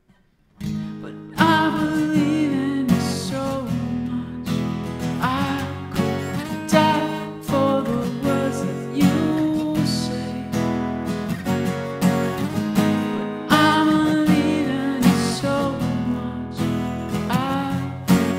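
Steel-string acoustic guitar strummed in a steady rhythm, coming in after a brief silence with a hard strum about a second and a half in.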